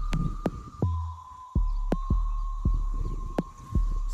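Low wind rumble and buffeting on the microphone, pulsing unevenly, with a thin steady high whine underneath and a few sharp clicks.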